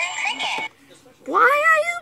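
Music from a playing video, cut off after about half a second. After a short pause comes one high, drawn-out meow-like call that rises in pitch and then holds.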